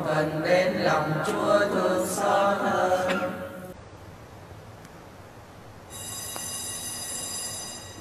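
A congregation praying aloud together in the chanted Vietnamese sing-song style, stopping a little under four seconds in. After a short lull, a high steady ringing tone sounds for about two seconds near the end.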